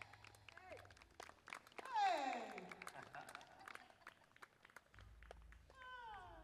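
Quiet, scattered clapping and a few voices from a small audience after a song, with a falling cheer about two seconds in.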